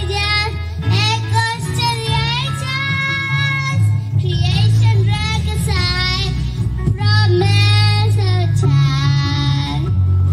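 A young girl singing solo into a microphone, amplified over a recorded backing track with a steady bass line, holding several long notes.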